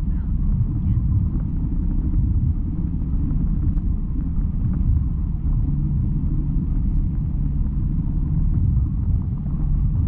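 Wind rushing over the microphone of a camera flying under a towed parasail, heard as a steady low rumble.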